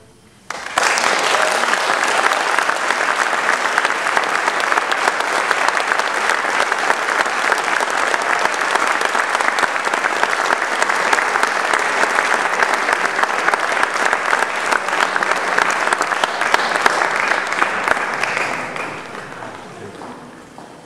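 Audience applauding. It breaks out about half a second after the final chord of a live string quintet, holds steady and dies away near the end.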